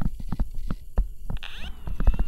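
A stylus tapping and scratching on a tablet screen during handwriting: a run of short, irregular clicks over a steady low electrical hum. A faint high steady tone sets in near the end.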